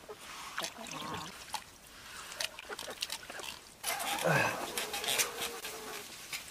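Free-range hens clucking softly around feed basins, with light taps and clicks of pecking. About four seconds in comes a louder stretch of rustling noise with a short low falling call.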